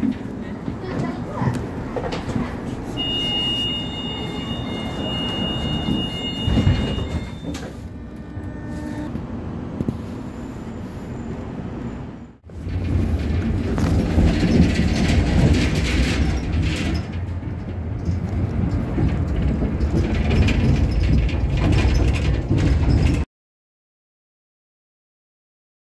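Inside a tram: a steady high warning beep sounds for about four seconds, typical of the door-closing signal, with door mechanism noises after it. Then the tram runs with a loud low rumble that cuts off abruptly near the end.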